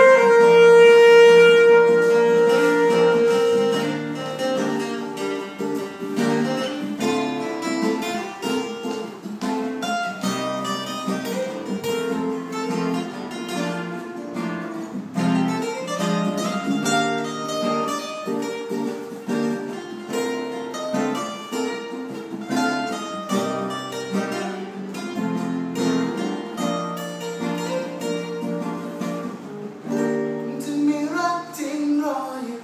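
Acoustic trio music: an alto saxophone holds one long note for the first few seconds, then two acoustic guitars carry on alone, picking and strumming chords and a melody.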